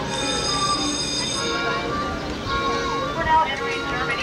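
Tour bus running with a steady high whine that fades after about a second and a half, under people talking.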